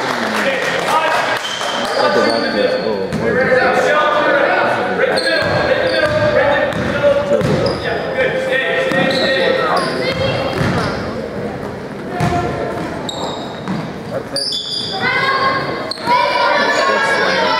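A basketball bouncing repeatedly on a hardwood gym floor, echoing in a large gymnasium, with voices calling out across the court.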